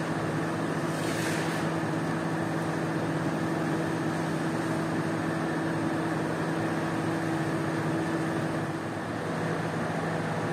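A motor running with a steady hum under a continuous wash of water as dirty, soapy water is squeegeed across a soaked rug. The higher part of the hum stops about nine seconds in.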